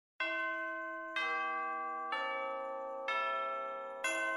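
Bell-like chimes struck four times, about a second apart, each note ringing on under the next, stepping down in pitch: the opening of a bell-toned music track.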